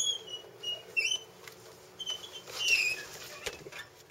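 Birds calling: a handful of short, high, squeaky chirps with gliding pitch, about one a second, over faint steady harbour background.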